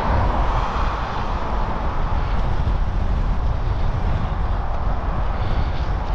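Wind buffeting the microphone of a moving bicycle's camera: a steady, loud low rumble with a rushing noise that eases about a second in.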